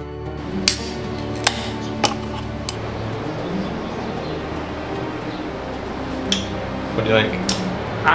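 Background music with a few sharp clicks scattered through it, and a man's voice starting near the end.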